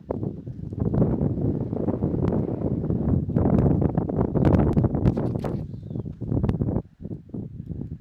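Wind buffeting the microphone in a loud, uneven low rumble that drops away about seven seconds in, with the hoofbeats of a horse moving on arena dirt beneath it.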